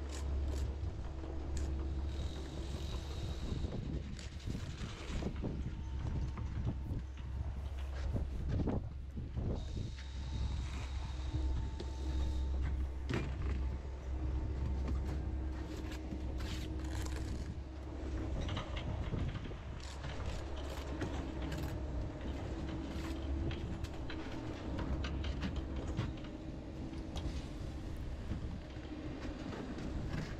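Blocklaying work on site: scattered knocks, taps and scrapes of steel trowels and mortar on dense concrete blocks as they are bedded and levelled. Underneath is a steady low rumble with a faint hum.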